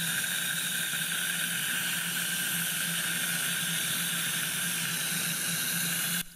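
High-speed dental handpiece running steadily with water spray, a steady high-pitched hiss, as a fine diamond bur preps an implant abutment under water irrigation.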